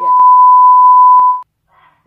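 Steady 1 kHz test tone, the beep that goes with TV colour bars, held loud for about a second and a half and then cut off sharply. Two faint clicks fall within it.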